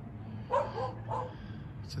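Two short animal calls, about half a second apart.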